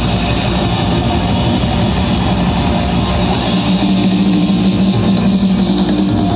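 Heavy metal band playing live through a festival PA, with distorted guitar and drums; held notes ring out in the second half.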